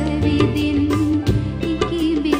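A woman singing a held, wavering melody over a live band, with tabla strikes and a steady bass line beneath.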